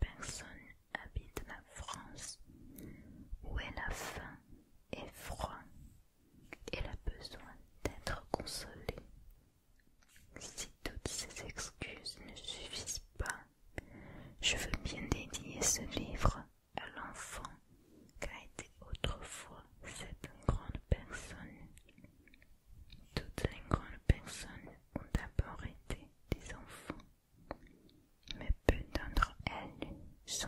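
Close-miked whispering of a French text read aloud, broken by many small clicks, with a soft makeup brush sweeping over a book page.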